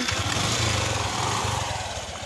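Small motorcycle engine running steadily close by as the bike comes down a steep dirt trail, a fast even firing pulse that eases off slightly near the end.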